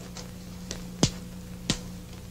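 A few short, sharp clicks or snaps, the two loudest about a second and a second and a half in, over a steady low hum.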